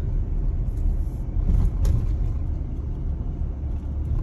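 Car driving slowly, its engine and tyre rumble heard from inside the cabin, with a brief click about two seconds in.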